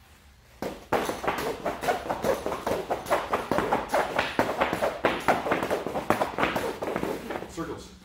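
Two heavy battle ropes swung in circles and slapping the turf floor in a rapid, steady run of strikes, several a second. It starts about half a second in and stops just before the end.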